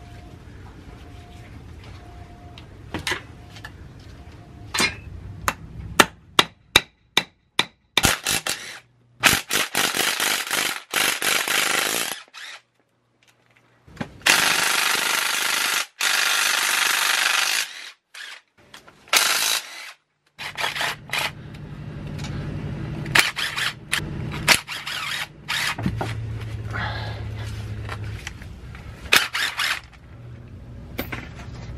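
Cordless impact driver hammering bolts loose on a T5 transmission case, in several long runs of a few seconds each separated by abrupt gaps. A quick series of sharp metallic clicks comes before the first runs, and shorter runs and clanks of tools follow in the second half.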